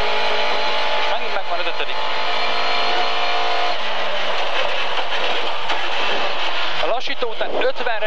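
Lada 2107 rally car's four-cylinder engine pulling hard at speed, heard from inside the cabin. The engine note holds steady, then changes about four seconds in.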